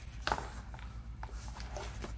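Faint handling noise: a short knock or two as hands shift the plastic rover tub, over a steady low hum.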